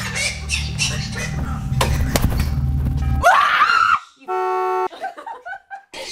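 A low, steady rumble runs for about three seconds, then stops abruptly as a woman screams in fright. About a second later a short, steady horn-like tone sounds.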